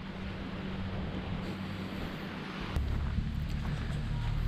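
Wind buffeting the microphone over a steady outdoor background, the low rumble getting heavier about three-quarters of the way through.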